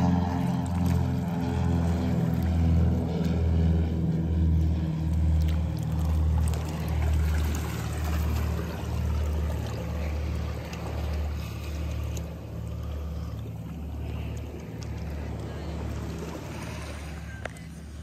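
Muffled underwater sound picked up by a phone microphone held beneath the surface: a low hum that pulses a bit more than once a second and fades away near the end.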